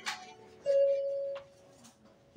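A click, then a single steady beep-like tone lasting under a second that cuts off with another click, from the audio gear being worked at the floor as the performance is started.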